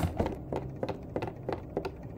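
A string of light, irregular clicks and taps from Littlest Pet Shop figurines being handled and set down on a wooden tabletop.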